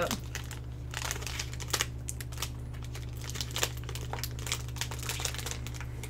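Plastic snack wrapper crinkling in the hands in short, irregular bursts as the packet is handled and sweets are taken out.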